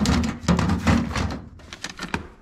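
Record player playing music that sounds distorted because it is running on the wrong power adapter; the sound drops away about one and a half seconds in, followed by a few clicks and knocks as the plug is handled.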